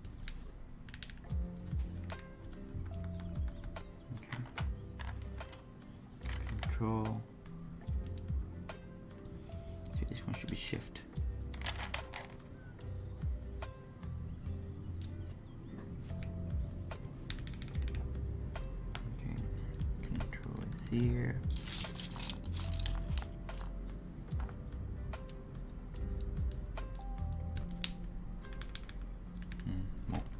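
Plastic keycaps being pressed onto the switches of a Daisy 40 mechanical keyboard: a running series of short clicks and clacks as caps are test-fitted and pressed down, over lofi background music.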